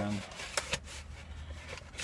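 Paper and cardboard packaging rustling and crackling in scattered short bursts as items are pulled out of an AeroPress box, over a steady low hum. A drawn-out spoken "and" trails off just as it begins.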